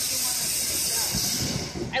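Ground fountain firework hissing steadily as it sprays a column of sparks, the hiss fading out near the end.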